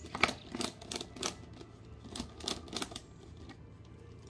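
Plastic twisty puzzle cube being turned by hand, a quick irregular run of clicks and rattles that thins out after about three seconds.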